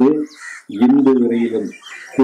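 A man speaking into a microphone, with a short pause between phrases.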